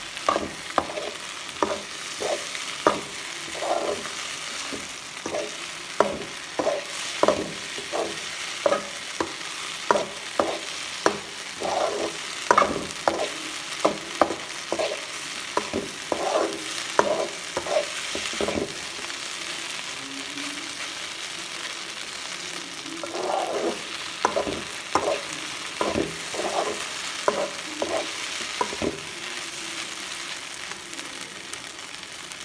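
A metal spatula scrapes and knocks against a metal wok, about two strokes a second, as idli pieces and scrambled egg are stirred, over a steady frying sizzle. The stirring stops for a few seconds just past the middle, leaving only the sizzle, then starts again.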